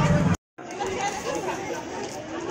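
Street hubbub of a crowd of people chattering, with many voices overlapping. About half a second in, the sound cuts out completely for a moment, and the chatter then resumes at a lower level.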